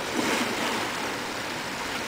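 A child shoots off the end of a water slide and splashes into a pool just after the start, over a steady rush of running water.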